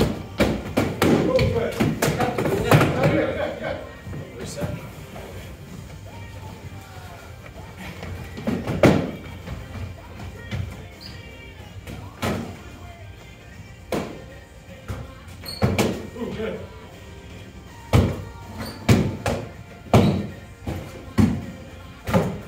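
Foam-padded boffer swords striking round shields and bodies in a sparring bout: scattered sharp thumps, coming thick and fast in the last few seconds, over background music.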